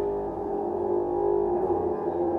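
Live improvised ensemble music: held, droning tones with slowly shifting pitch and no beat.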